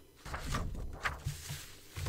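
Rustling paper and low knocks of hands moving sheets and small objects about on a desktop while searching for an eraser.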